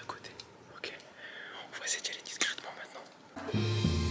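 Hushed whispering voices, then background music with steady held notes and a low bass comes in about three and a half seconds in.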